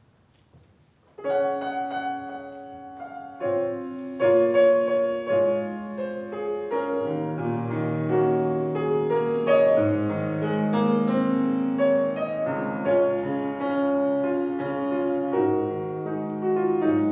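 Piano playing the introduction to a choir song, starting about a second in with chords and a melody line.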